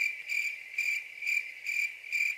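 A car's electronic warning chime beeping steadily about twice a second, a single pitched tone repeated evenly, as the cabin chime does with a door standing open.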